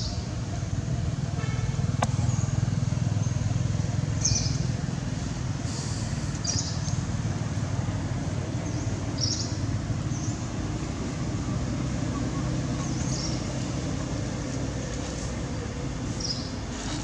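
Outdoor ambience: a steady low rumble with brief high-pitched chirps every few seconds.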